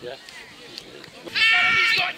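A spectator's loud, high-pitched, drawn-out shout, starting about one and a half seconds in, over faint crowd voices.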